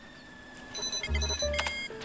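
Electronic beeps and bleeps in a cartoon sound effect: a run of short, high, steady tones at several pitches that starts a little before the middle. Low bass notes of background music sound underneath.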